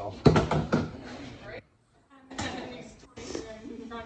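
People talking, with a quick run of sharp knocks near the start, the loudest sounds in this stretch.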